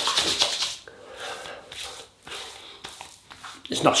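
Hands rubbing and patting menthol witch hazel onto a freshly shaved face. There is a louder spell of skin rubbing at the start, then softer, scattered pats and rubs.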